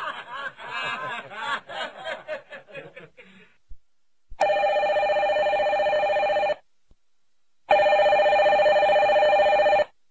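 A man's laughter dies away over the first three seconds. Then a desk telephone rings twice, with two long, steady rings of about two seconds each and a second's pause between them.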